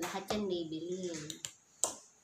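A person's voice, drawn out and wavering in pitch, for about a second and a half, then a single sharp click near the end.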